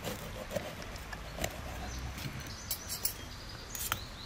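A metal fork clicking and scraping in a ceramic bowl of lamb stew, with the small mouth sounds of someone eating. There are a few sharp clicks, the strongest near the end, over a steady low background rumble.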